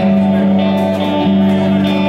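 Live rock band playing the opening of a song, with an electric guitar among sustained held notes. The low note breaks off and comes back about a second in.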